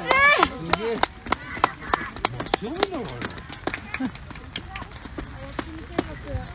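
A small crowd of spectators clapping quickly and evenly for a penalty kick that has just gone in, with scattered voices; the clapping thins out after about five seconds. A loud cheer cuts off just as it begins.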